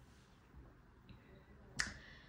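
Quiet room tone broken by a single sharp click near the end, with a faint high steady tone underneath in the second half.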